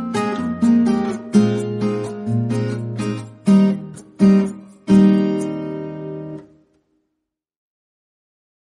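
Background music of strummed acoustic guitar chords. The last chord rings out and fades, and the music stops about six and a half seconds in.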